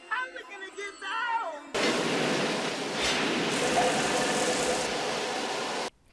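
Film soundtrack: about two seconds of bending, voice-like sounds, then a loud, steady rushing hiss, like a high-pressure spray or blast, that lasts about four seconds and cuts off suddenly.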